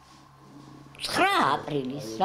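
A woman speaking: after about a second's pause with only a faint steady hum, her voice comes back loudly with a drawn-out exclamation that rises and falls in pitch.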